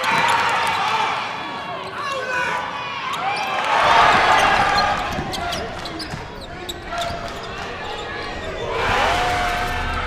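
Live game sound from a basketball game on a hardwood court: the ball dribbling in sharp bounces under the shouts of players and the crowd, with the crowd noise swelling about four seconds in and again near the end.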